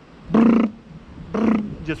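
A man's voice making two short "brr" noises about a second apart, a mouth sound effect imitating a house sparrow's very fast wingbeat.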